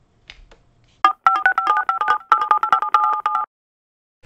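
Touch-tone telephone dialing: a rapid run of short two-tone keypad beeps lasting about two and a half seconds, starting about a second in and cutting off suddenly.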